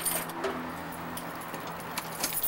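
A bunch of keys jingling briefly a couple of times in the first half second, over a low steady hum.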